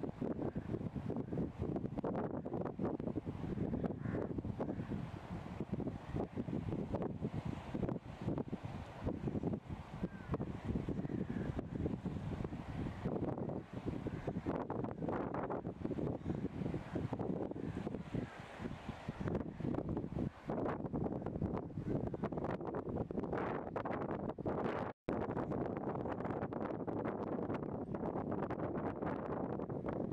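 Wind buffeting the microphone in uneven gusts, with a split-second dropout late on.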